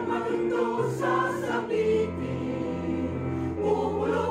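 Mixed choir of men's and women's voices singing; the voices move through several short notes, then hold one long chord through most of the second half.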